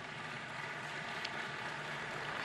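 Steady background ambience of a crowded outdoor exhibition ground: an even hiss, with a faint click about a second in.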